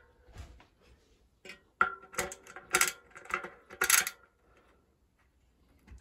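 Sharp metallic clicks and clinks, about five over two seconds with a brief ring, as a Hope RS1 freehub body with its spring-loaded pawls is pushed into the aluminium hub shell and meets its ratchet teeth.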